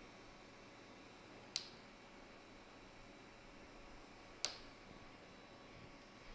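Two sharp snips about three seconds apart: side cutters trimming the two leads of a newly soldered replacement capacitor on an LED driver board.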